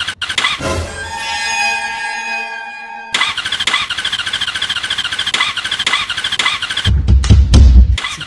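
Motorcycle electric starter cranking in a fast, even pulsing whir without the engine catching: the bike won't start. A short burst of music plays about a second in, and a deep low rumble comes in near the end.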